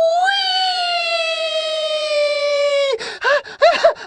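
A high-pitched scream held for about three seconds, sliding slowly down in pitch, then breaking into quick pulsing wails.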